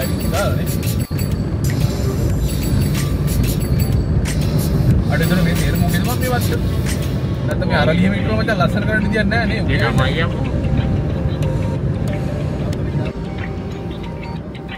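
Low rumble of a car driving slowly, heard from inside the cabin, under background music, with a voice from about five to ten seconds in.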